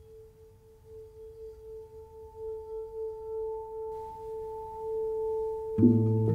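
A flute holding one long, soft, pure note that swells slowly louder with a gentle vibrato; just before the end a guitar comes in with plucked chords.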